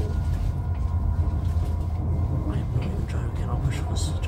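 Steady low rumble of a moving passenger train heard from inside the carriage, with a faint steady whine above it. A voice talks briefly over it near the end.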